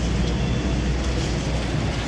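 Steady low rumble of street noise from a busy market street, without any single clear event.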